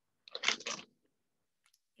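A plastic crisp packet crinkling briefly as it is handled, one short crackle lasting about half a second.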